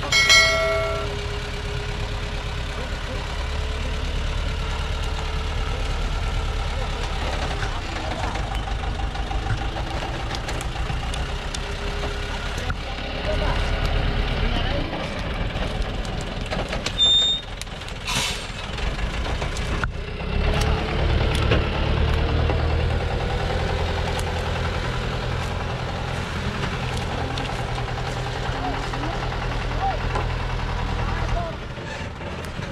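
Diesel engine of a Thaco truck running under load as it crawls over steep dirt ground, heavily overloaded with acacia logs; a steady low engine drone that swells in places. A short, loud pitched sound comes right at the start, and a brief hiss about eighteen seconds in.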